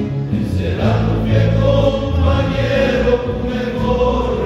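Men's church choir singing a hymn together, the voices holding long notes.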